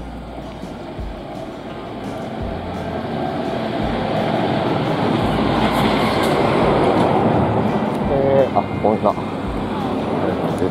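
A large box-body truck passes close by on the street: its engine and tyre noise builds over several seconds to a peak about six to seven seconds in, then eases. A few brief pitched sounds come near the end.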